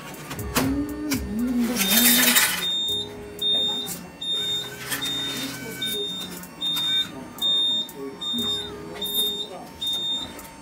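Meal-ticket vending machine beeping: a short, high electronic beep repeats about one and a half times a second from about two seconds in, with a loud burst of rustling noise just as the beeping begins.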